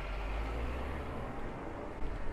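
City street background: a low rumble of traffic under a steady haze of street noise, the rumble easing after the first second.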